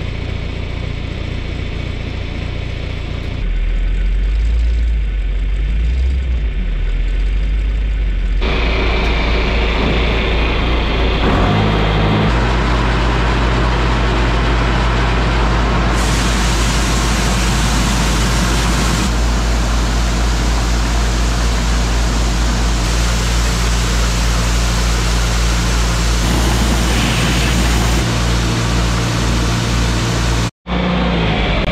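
Engines and a Brandt grain auger running steadily while a tandem truck unloads soybeans into a bin. The drone changes abruptly several times, getting louder and noisier from about eight seconds in.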